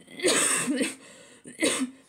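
A woman coughing twice into her hand: a longer cough, then a shorter one about a second later.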